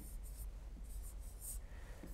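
Faint scratching of a pen writing on an interactive whiteboard screen, in two short bursts of strokes.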